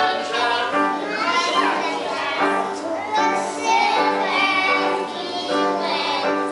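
A group of young children singing together with musical accompaniment.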